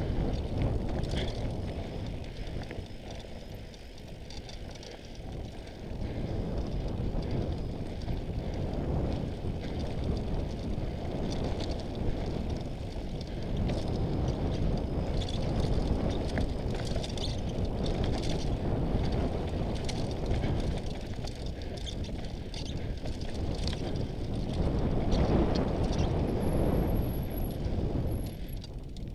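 Mountain bike riding down a rocky dirt trail, heard through a head-mounted camera: steady wind rumble on the microphone, with scattered clicks and clatters from the tyres on loose stones and the bike over the bumps.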